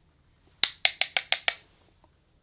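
Six quick, sharp clicks in under a second: a makeup brush tapped against the edge of a plastic blush compact to knock off excess powder.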